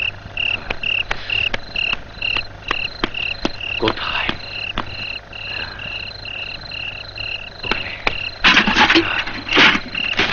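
Night ambience: a chirping call repeats steadily about twice a second, with scattered clicks. Near the end, loud, rough crashing and rustling takes over.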